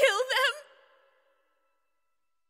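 A girl's short, wavering vocal sound over a soft, steady music chord, both fading away about a second in, followed by silence.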